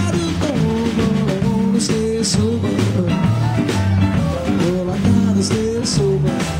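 Live blues band playing: electric guitar, upright bass, piano and drum kit, with cymbal strikes a few times through.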